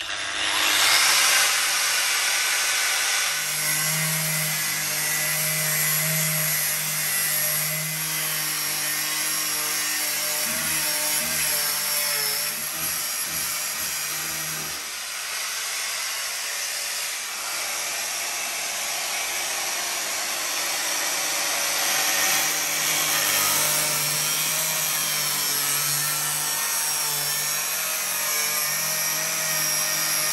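An angle grinder with a cutting disc spins up and cuts steadily into the sheet steel of a car body's rear wheel arch, throwing sparks. Its pitch and load shift as the disc bites, with a change in tone about halfway through.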